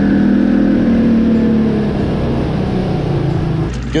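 A 225 hp outboard motor running in gear and churning the water behind the boat, its pitch dropping a little about two seconds in.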